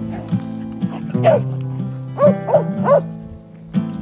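A Blue Lacy dog barking four times, once and then three in quick succession, as it drives a Texas Longhorn, over background music.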